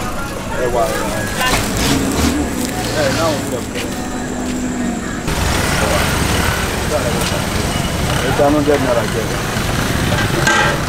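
Busy street ambience: people talking and road traffic. The background noise changes abruptly about five seconds in.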